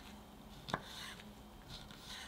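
A knife dicing soft canned white peach on a wooden cutting board. The blade makes soft cuts through the fruit, with one sharp knock on the board about three-quarters of a second in and a few fainter taps near the end.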